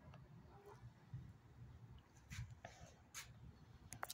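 Near silence: only a faint, low rumble of distant thunder, with a few faint clicks.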